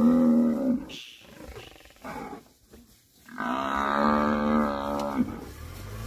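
African buffalo bellowing in distress while lions attack it: two long, steady bellows, the first ending about a second in and the second starting about halfway through and lasting nearly two seconds.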